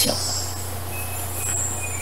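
A pause in the talk, filled only by a steady low hum and faint hiss of background noise.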